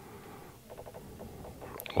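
Faint scratching and rustling of a plastic coin tube of silver coins being handled, with a small click near the end.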